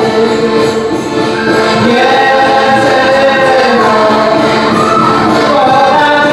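A group of voices singing a song together, music for a children's ring dance.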